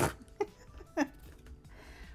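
A woman laughing briefly: a sharp breathy burst, then two short chuckles, the last about a second in.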